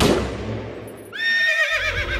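A single gunshot at the very start, its crack dying away over about a second. Then a horse whinnies, a wavering cry that begins about a second in and runs on past the end.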